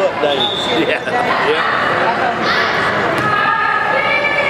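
Basketball bouncing on a hardwood gym floor during play, amid players' and spectators' shouts echoing in the gym.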